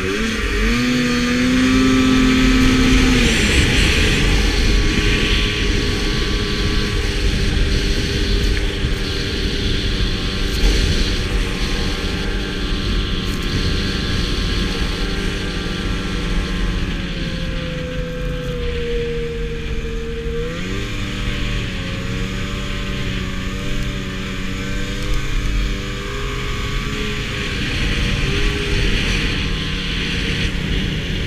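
Arctic Cat snowmobile engine revving up hard, then running at a steady high speed. About two-thirds of the way through, its pitch drops briefly and climbs again.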